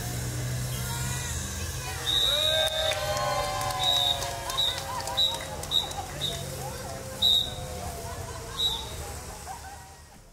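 A crowd of people cheering and calling out as balloons are let go. A long, high whistle-like tone sounds about two seconds in, followed by several short ones.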